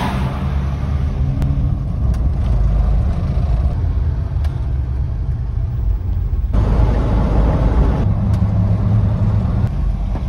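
Car cabin noise while driving: a steady low rumble of engine and road, with a few faint clicks, and an abrupt shift in the sound about six and a half seconds in.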